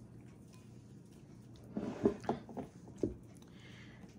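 A person sipping juice through a plastic straw: a few short slurps about two seconds in, then a single soft knock.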